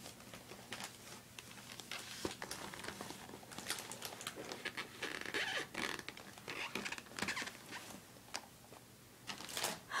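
Close handling noise: cloth rustling and short scratchy scrapes as dolls are moved about on fabric near the microphone.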